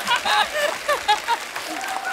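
Studio audience applauding, with a voice talking over the clapping.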